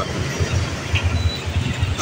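Low, steady rumble of a running engine with a fast, even pulse.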